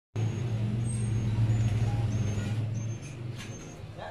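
Yamaha NMAX 155 scooter's single-cylinder engine idling with a steady low hum that becomes quieter about three seconds in.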